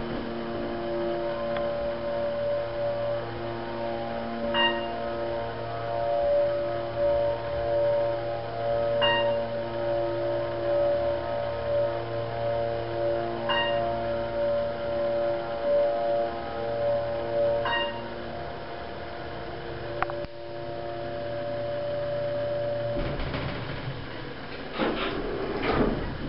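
Otis hydraulic elevator car rising, its pump unit giving a steady hum with constant tones, with a short beep four times about every four and a half seconds as the car passes each floor. The hum drops away after a click as the car levels and stops, and the doors rumble open near the end.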